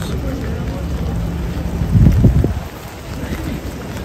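Rainy city street ambience: steady rain and wet-pavement noise with passers-by talking. A low rumble swells about two seconds in and is the loudest moment.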